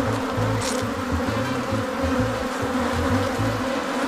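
Honeybees buzzing steadily in a continuous hum around an open hive, many bees in the air during the inspection.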